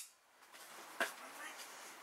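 Faint handling of trading cards and a plastic magnetic card holder, with one sharp click about a second in, as a card is slipped in behind another to pad the holder.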